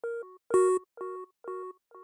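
A Serum synth patch, an analog sine layered with an FM'd sine an octave up and run through downsample distortion, playing short clipped notes about two a second. The notes alternate between two or three pitches in a simple repetitive melody, and the distortion's drive is set so its added tones sit in key.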